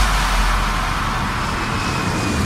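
White-noise sweep transition in an electronic dance mix: a steady hiss over a low bass hum with no beat, slowly fading.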